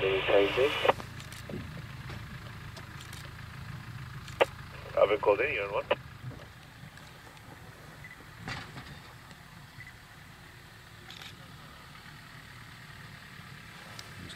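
Voices over a safari vehicle's two-way radio, a short transmission ending just after the start and another brief one about five seconds in, over the low hum of the idling game-drive vehicle, which grows quieter after about seven seconds.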